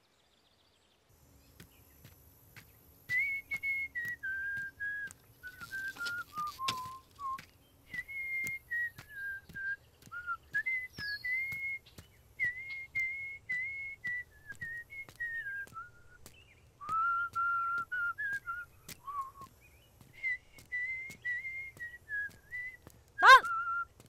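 A person whistling a slow tune in short phrases, the notes stepping up and down with brief pauses between them. A short, loud sliding squeak comes near the end.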